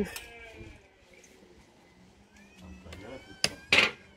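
A faint, rising cat meow in the second half, followed near the end by a sharp click and a short, loud hissing burst.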